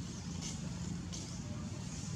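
A steady low hum from a distant motor, with two brief faint high ticks about half a second and just over a second in.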